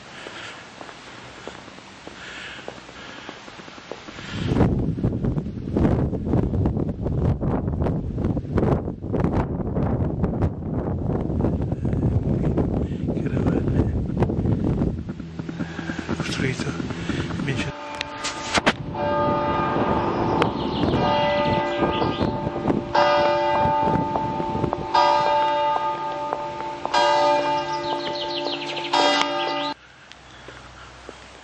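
Church bells ringing, several bells struck in an uneven peal with clear ringing tones from about 18 seconds in. Before them comes a long stretch of loud, dense, rough noise.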